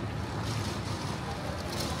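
Steady outdoor city ambience: a low rumble of wind on the microphone and distant traffic. A brief scuff or rustle comes near the end.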